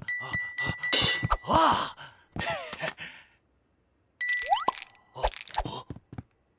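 Cartoon sound effects and wordless character vocalizing: a quick run of sharp clicks with a high ding near the start, a groan-like voice about a second and a half in, and a fast rising sweep about four and a half seconds in.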